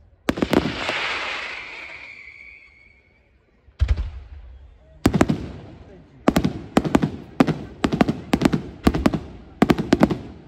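Aerial fireworks shells bursting. A few sharp bangs come first, followed by a hiss that fades over about two seconds. After a short pause a single bang sounds, then a rapid run of bangs at about two a second.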